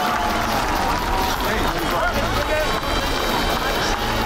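Crowd cheering and shouting over background music with a pulsing bass.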